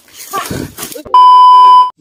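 Edited-in censor bleep: a loud, steady, pure beep tone lasting under a second, starting and stopping abruptly about a second in, after a few words of speech.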